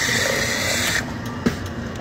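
Frozen slushie machine dispensing cherry flavour into a cup: a hissing pour that stops about a second in, followed by a short click.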